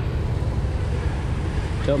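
Steady noise of light rain on a wet street, under a low wind rumble on the microphone. A voice starts right at the end.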